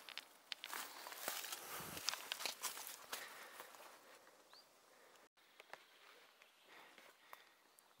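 Footsteps on dry leaves and twigs: a run of rustling and small snaps for the first few seconds, then only a few faint crackles after a brief break in the sound.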